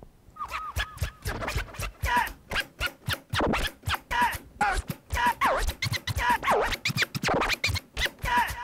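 DJ scratching on the jog wheel of a Denon DJ SC5000 Prime media player: a sample pushed back and forth in quick cuts, its pitch sliding up and down with each stroke.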